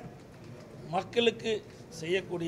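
A man's speech at a press conference: a pause, then a short spoken phrase about a second in.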